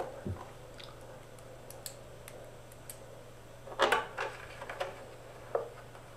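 Faint scattered clicks and taps of a small wrench and screws being handled and turned into a guitar's backplate, with a louder brief clatter about four seconds in.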